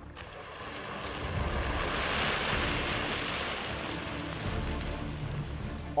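Hot oil in a propane turkey fryer erupting and boiling over, a rushing hiss that builds over about two seconds, holds, then slowly dies away as the spilled oil flares up around the burner.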